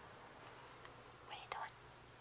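Tissue paper crinkling as a cat mouths and paws at it: two short dry rustles about one and a half seconds in, over faint hiss.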